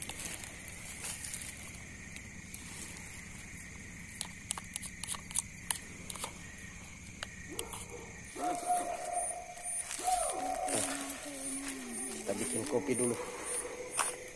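Steady chorus of night insects, with crickets chirping in evenly spaced pulses near the end. Light clicks of a knife and spoon against a plate come in the middle, and low voices join in the second half.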